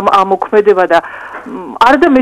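A man speaking in Georgian, breaking off briefly about a second in before carrying on, with a steady low hum underneath.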